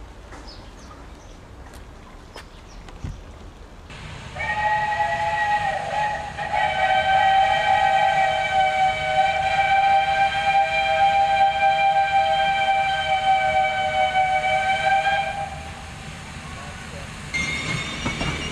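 Steam locomotive whistle blown in one long blast of about eleven seconds: a chord of several steady tones sounding together over a low rumble. It starts about four seconds in and stops a couple of seconds before the end.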